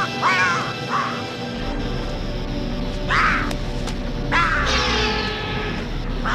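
Background music with a cartoon vulture's squawking, crow-like laughs breaking in several separate outbursts.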